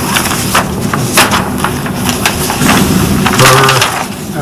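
Papers rustling and being handled close to the table microphones, a run of irregular crackles and clicks, with a brief murmured voice near the end.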